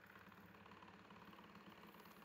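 Near silence: faint steady room tone with a low hum and hiss.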